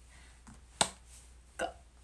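A quiet pause broken by one sharp click a little under a second in, then a brief short voice sound from the woman near the end.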